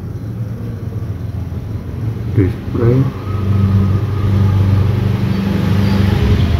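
A steady low engine hum, like a motor vehicle running, that grows louder about three to four seconds in.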